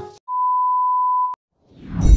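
A single steady electronic beep, a pure tone about a second long that cuts off with a click, followed by background music fading in near the end.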